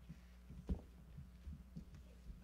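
Footsteps on a stage floor: a few dull low thumps at uneven spacing, the loudest about two-thirds of a second in, over a steady electrical hum.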